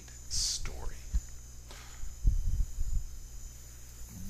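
A man's voice trailing off at the end of a spoken phrase, with a hissed 's' and a breath, then a sharp click and a few low thumps about two seconds in.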